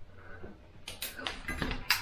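Metal clicks and clinks from cutting pliers and a piece of steel coat-hanger wire being handled, with a handful of sharp ticks in the second half.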